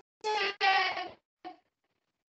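A participant's voice coming through a video call, broken off after about a second with a short blip and then dead silence: the call connection is breaking up and cutting the speech off.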